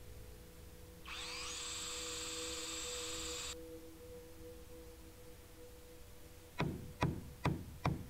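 A cordless drill spins up with a whine and drives a screw into metal roofing for about two and a half seconds, starting a second in. Near the end come four sharp hammer blows on wooden roof strapping, about half a second apart.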